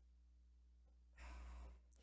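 Near silence with a steady low electrical hum, broken about halfway through by a soft breath or sigh into a microphone lasting about half a second.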